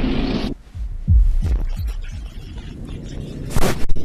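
Cinematic sound-design effects: a dense rumble cuts off about half a second in, followed by about three deep, heartbeat-like thuds that drop in pitch, and a single sharp hit near the end.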